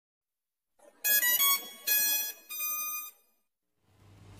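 Short chiming intro jingle: three quick bell-like notes followed by two ringing chords that fade away.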